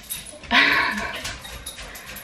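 A dog gives one short, loud bark-like call about half a second in, falling slightly in pitch.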